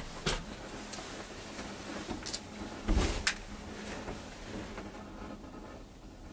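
Handling noise in a wooden hunting blind as a rifle is brought up to shoot: a few short sharp clicks and knocks, with a heavier thump about three seconds in, over a low background.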